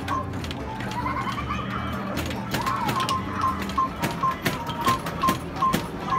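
Basketball arcade game running: a short electronic beep repeats about two to three times a second over the game's music, with sharp knocks of thrown balls hitting the backboard and rim, coming thicker after about two seconds.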